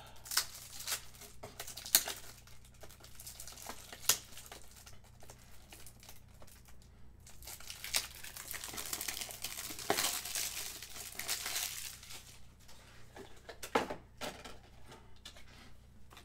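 Plastic packaging crinkling and rustling in the hands as a pack of toploaders (rigid plastic card holders) is opened, with scattered sharp clicks and snaps of the plastic.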